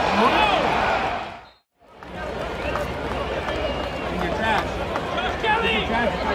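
Stadium crowd noise at a football game: many voices shouting and talking at once. The sound fades out briefly about a second and a half in at an edit, then comes back as a steady crowd murmur with scattered voices.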